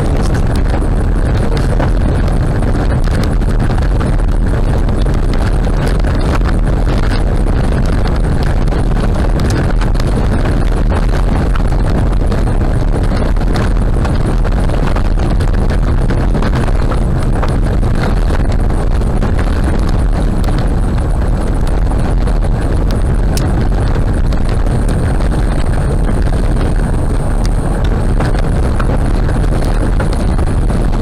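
Car tyres running on a gravel road at about 60 km/h, heard from inside the cabin: a loud, steady rumble with many small clicks of loose stones.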